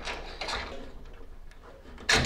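Faint metal scraping of a hand reamer being pushed and twisted back through a mounting hole in the powder-coated fuselage frame, clearing powder coating out of the hole.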